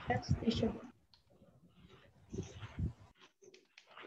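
Faint, indistinct voices, short bits of speech with gaps between them, followed by a few soft clicks near the end.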